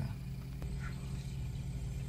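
Steady low hum inside a stationary car's cabin, typical of the engine idling.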